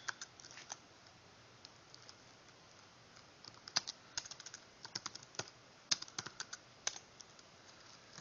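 Typing on a computer keyboard: a few keystrokes right at the start, a pause of about three seconds, then a run of uneven key clicks in the second half.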